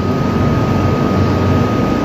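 Steady background hum and hiss with a constant thin high tone, unchanging throughout.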